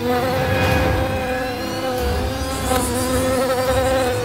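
A flying insect buzzing steadily in flight, its hum wavering slightly in pitch.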